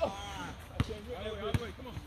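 Basketball bouncing on an outdoor hard court: two sharp thuds under a second apart, with players' voices calling out around them.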